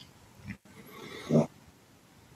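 A short, quiet human vocal sound, a brief hum with a rising pitch, about a second and a half in, after a faint breath-like sound about half a second in.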